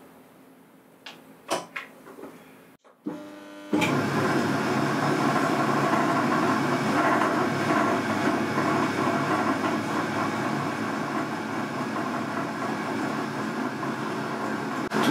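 A few clicks, then about four seconds in a Boxford lathe starts abruptly and runs steadily at a constant speed, its spindle turning at about 430 rpm.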